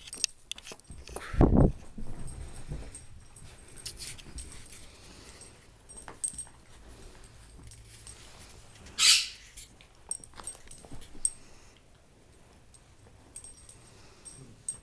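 Dachshund puppies playing rough, with scuffling and small noises from the dogs. There is a loud low thump about a second and a half in and a short, high cry about nine seconds in.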